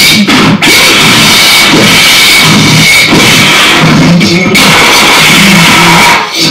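Live beatboxing over music through a club PA, recorded very loud: a dense, choppy stream of vocal percussion.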